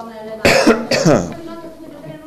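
A man coughing twice into his fist: two short, loud coughs about half a second apart, starting about half a second in.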